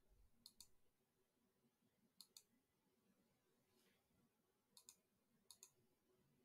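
Faint computer mouse clicks, four quick double-clicks spread over a few seconds.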